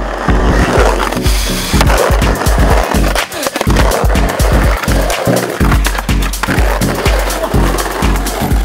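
Skateboard wheels rolling over a rough brick-tiled bank, a dense grinding hiss, under background music with a heavy bass beat.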